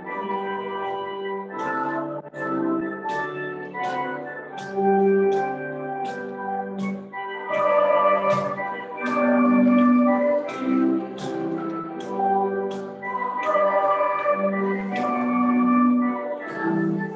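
Organ playing a hymn tune in held chords, with sharp percussive taps roughly twice a second.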